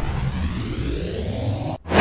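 Logo-sting sound effects: a whoosh with a deep low tone dying away under a slowly rising sweep, broken by a brief silence near the end and followed at once by a sudden new loud whoosh.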